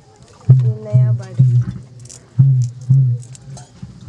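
Machete blade chopping into a wooden plank, splitting off thin sticks: five sharp knocks in two groups, three then two, each with a short low ring.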